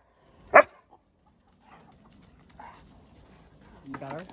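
A dog barks once, a single short loud bark about half a second in.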